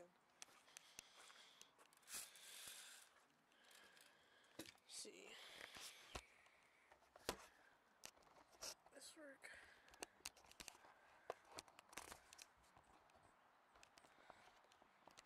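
Faint handling noise of a camera being moved and set down on a ledge: scattered clicks and brief rustling and scraping against the microphone.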